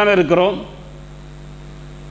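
Steady electrical mains hum, heard on its own after a man's voice stops about half a second in.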